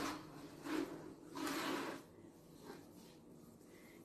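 Wooden spatula spreading thick cornbread batter in a metal baking pan: two soft scrapes, a short one under a second in and a longer one at about a second and a half.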